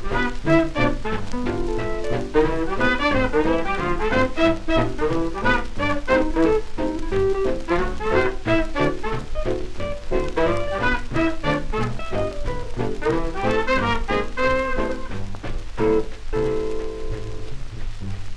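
Swing band instrumental passage played from a 1943 shellac 78 rpm record: trumpet and tenor saxophone over piano, electric guitar, string bass and drums, with the record's surface crackle underneath. Near the end the band holds long notes.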